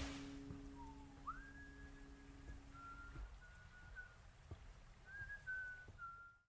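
Faint whistling: one thin clear tone that dips, then slides up and holds, then steps down through several short held notes. A low held note sounds under it and stops about halfway.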